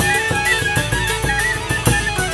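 Traditional Hutsul-style folk band playing a Hutsulka dance: fiddle and a small wooden flute carry a lively, ornamented melody over a hammered dulcimer (tsymbaly), with a bass drum and its mounted cymbal keeping a steady beat.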